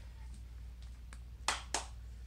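Two sharp clicks about a quarter of a second apart, made while doing a bodyweight squat, over a low steady hum.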